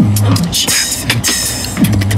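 Beatboxing: a vocal beat with deep bass notes that drop in pitch and hold low, near the start and again near the end, and hissing hi-hat and snare sounds between them.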